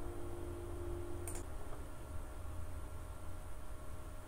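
Quiet room tone with a low steady hum, and a single computer mouse click about a second in; a faint steady tone stops just after the click.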